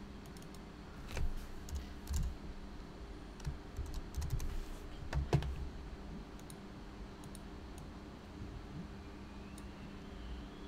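Typing on a computer keyboard: scattered keystrokes and clicks over the first half, then only a low steady hum.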